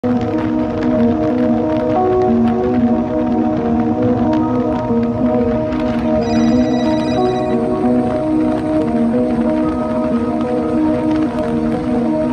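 Background music of slow, held chords, with no speech.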